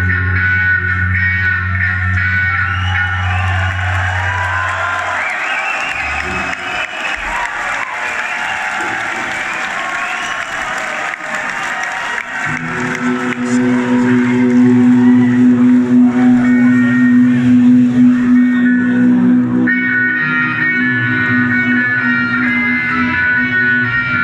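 Live rock band with electric guitars through effects. A held low bass note fades out about five seconds in, leaving swirling, gliding guitar lines. About twelve seconds in a new sustained chord and bass come in, and the music gets louder.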